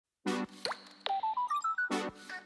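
Short intro jingle with cartoon sound effects: a chord hit, a quick upward pop, a downward slide, then a run of about six short notes climbing in pitch, ending on a second chord hit.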